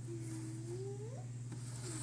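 A young child's long wordless vocal sound, held on one pitch and then rising, with a second wavering one starting near the end.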